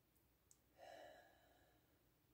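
A woman's faint exhaled sigh about a second in, following a deep breath; otherwise near silence, with a tiny click just before the sigh.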